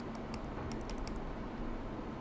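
Faint clicking of computer keys: a quick run of about a dozen clicks in the first second or so, then a few more, over a steady low hum.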